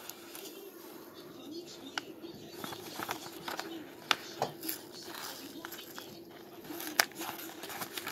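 Adhesive tape being peeled off a silver quarter: faint crackling of tape and paper with a few sharp clicks. A steady low hum runs underneath.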